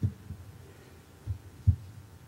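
Four dull, low thumps, the last one the loudest, from books or papers being set down and handled on a wooden pulpit, picked up close by its microphone.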